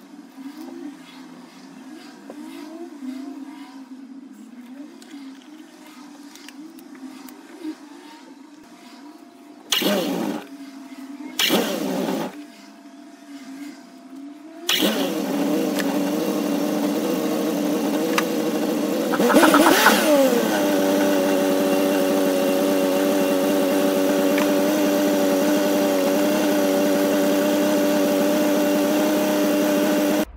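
Triumph TR6 fuel-injected straight-six being started after reassembly: two short bursts of cranking, then it catches about fifteen seconds in, is revved once a few seconds later and settles into a steady idle. Faint clicks and handling noise come before the first cranking.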